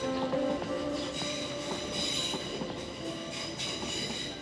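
Passenger train running over a railway bridge overhead, with a high, steady whine that swells and fades over its rumble.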